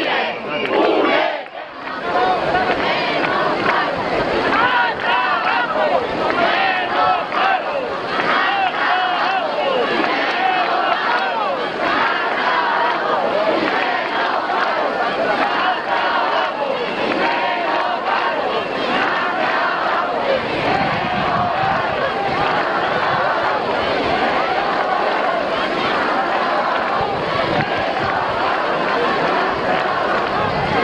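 Large crowd of demonstrators, many voices talking and calling out at once in a dense, steady crowd noise, with a brief lull about a second and a half in.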